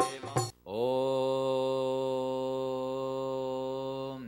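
Devotional music with drum strokes stops about half a second in, and then a single long chanted note follows: it slides up into pitch and is held steady for about three seconds, in the manner of a mantra chant.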